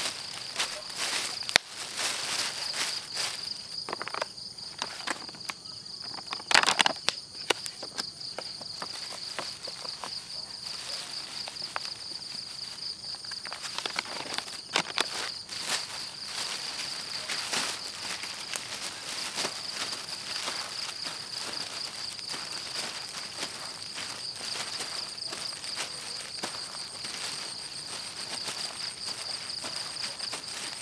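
A plastic bag rustling and crinkling in irregular bursts as hands work bait inside it, loudest in the first several seconds. Behind it, night insects trill steadily at a high pitch.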